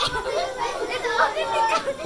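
Children's voices chattering and talking over one another.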